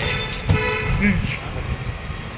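A vehicle horn sounds steadily through about the first second, over people talking.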